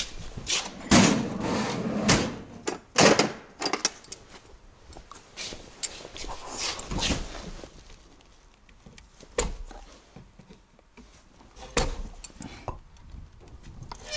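Metal tools clattering and knocking on a tool cart as pliers are fetched, loudest in the first few seconds. Then quieter clicks and scrapes of pliers working at the windscreen-washer hand pump on the dashboard, with a couple of sharp knocks.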